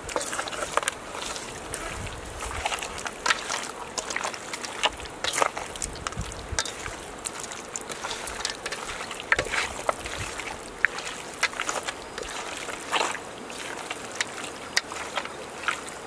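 Hands rubbing and tossing raw pork belly chunks with coarse salt in a steel bowl: irregular wet squelches and slaps of meat against meat and metal.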